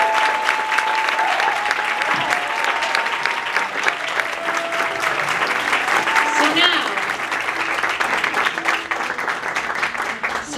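Audience applauding, with a few voices calling out over the clapping. The song's last held note dies away in the first second.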